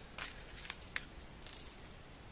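Plastic Lego pieces being handled and fitted together: a few faint, sharp clicks and light rustles.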